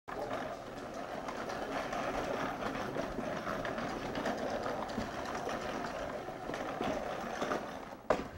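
Push-type broadcast spreader wheeled across a floor, its wheels, gearing and spinner giving a steady rattling whir full of small clicks.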